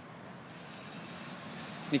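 Faint steady engine-like rumble in the background, growing slightly louder; a man starts speaking right at the end.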